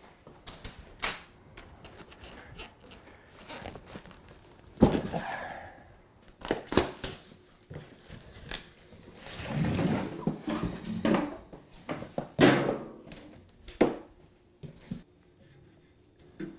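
A cardboard box being opened and a countertop fridge unpacked: flaps and packing rustling and scraping, with a string of knocks and thuds, the loudest about five and twelve seconds in.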